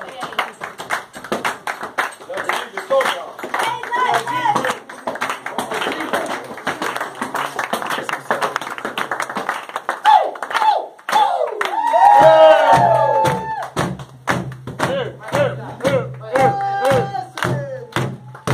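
Palmas: a group clapping by hand, with voices singing over the claps. The voices are loudest about two-thirds of the way through.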